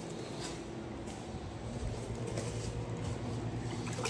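A steady low machine hum, with a few faint scattered rustles.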